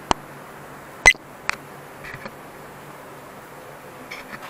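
A few sharp clicks and knocks from the camera being handled, the loudest about a second in, over a faint steady background hum.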